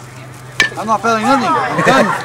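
A single sharp crack of the ball at home plate in a fastball game about half a second in, followed by spectators and players shouting, over a steady electrical hum.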